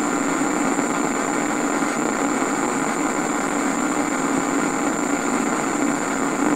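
Homemade Tesla-type coil (the Shaziz coil) running, a steady, unchanging hissing buzz with a thin high tone over it, as it charges a battery pack through a capacitor.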